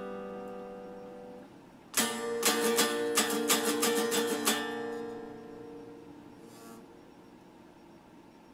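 Electric guitar with a Stratocaster-style body, strummed chords. A chord rings and fades, then about two seconds in a new chord is strummed several times. It is left to ring out, dying away over the last few seconds.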